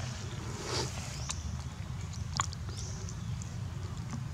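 Steady low rumble of wind on the microphone, with a few sharp clicks scattered through it and faint short high chirps.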